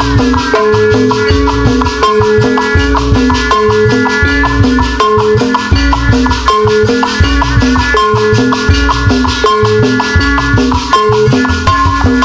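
Live Sundanese jaipong music: kendang drums, gamelan metallophones playing a repeating stepped melody, and crisp metal percussion, at a steady dance rhythm.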